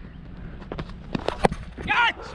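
A run of sharp knocks about a second in, the batsman's footsteps on the hard, dry dirt pitch, picked up by the helmet-mounted camera over steady outdoor noise. A short shouted call comes right at the end.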